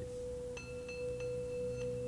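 Background music of slow, sustained tones: a steady low held note, joined about half a second in by higher, bell-like held tones.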